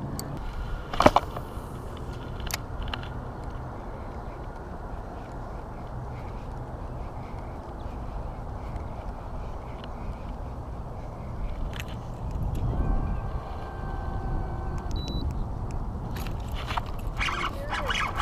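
Steady low wind rumble on the microphone, with one sharp click about a second in and a faint steady hum of several tones for about two seconds near three-quarters of the way through.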